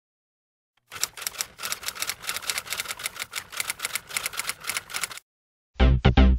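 A fast run of sharp clicks, about eight a second, starting about a second in and stopping suddenly after about four seconds. Electronic music with a heavy beat comes in just before the end.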